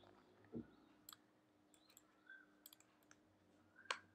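Faint, scattered clicks of a computer mouse and keyboard at a desk, with a soft low thump about half a second in.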